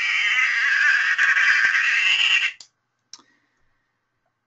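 Recorded bottlenose dolphin burst-pulse call, a rapid train of clicks used in social contexts, lasting about two and a half seconds before cutting off. A single faint click follows about three seconds in.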